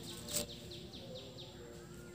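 A bird calling in a quick series of short descending chirps, about four a second, that stops shortly before the end. About a third of a second in, a sharp crackle of cellophane candy wrapper as the wrapped lollipop is picked up.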